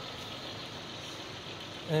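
Car engine idling: a steady, even rush with no distinct sounds.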